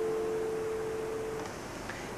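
A single steady, pure musical tone, left over as the humming and chanting die away, fading until it stops about one and a half seconds in, leaving faint hiss.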